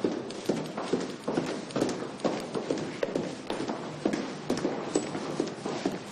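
Brisk footsteps of hard-soled shoes on a hard, polished corridor floor, a quick even stride of about two to three steps a second.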